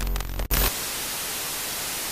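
Television static used as an end effect: a loud, stuttering glitch of distorted noise cuts out for an instant about half a second in, then settles into a steady hiss.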